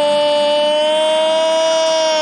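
A football commentator's long drawn-out "goool" shout, celebrating a goal: one loud note held without a break, its pitch rising slightly.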